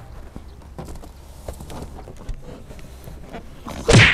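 Handling noise from a car's rear door being opened and a heavy boxed microwave being shifted on the back seat: soft scuffs, knocks and rustles, ending in a short loud burst of noise.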